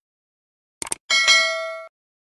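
Subscribe-button animation sound effects: a quick double click, then a bright bell-like ding that rings for under a second, fading before it cuts off.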